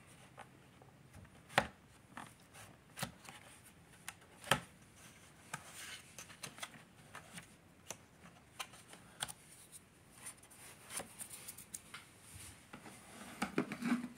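Hands handling the plastic floor head of a Shark Apex vacuum while cleaning it out: scattered light clicks and taps with soft rubbing, the two sharpest taps about a second and a half in and about four and a half seconds in. The vacuum motor is not running.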